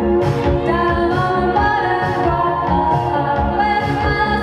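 Live band music: a woman sings lead into a microphone over electronic keyboards and a drum kit keeping a steady beat.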